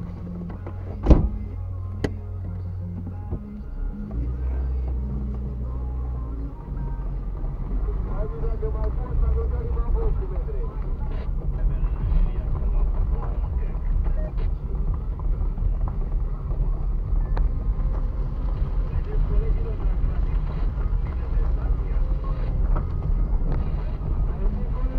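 Car cabin noise: the engine runs with a steady low hum, then a rough low rumble of tyres and suspension on the rutted dirt road grows louder from about seven seconds in. A sharp knock comes about a second in and a lighter one a second later.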